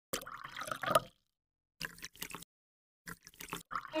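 Bubbling, dripping water sound effect in three short bursts, each cut off into dead silence.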